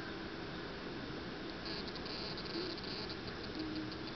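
An insect chirping in rapid high-pitched pulses, starting about a second and a half in and trailing off near the end, over a steady hiss.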